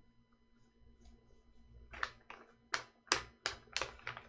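Stacked sheets of animation paper being flipped by hand, a quick series of crisp paper flaps, about three a second, starting about halfway in. The drawings are being flipped to preview the movement between them.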